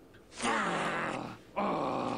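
Cartoon characters' voices: two drawn-out vocal cries, each just under a second long and falling in pitch.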